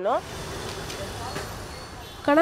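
Steady city street traffic noise: the even hum of passing vehicles.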